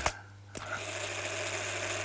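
Vintage German cine camera's film mechanism running with a steady whirr, starting about half a second in.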